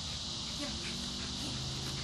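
Steady high-pitched chorus of insects, with no pause or change in it.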